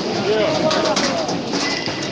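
A crowd of many people shouting and talking over one another, no single voice standing out.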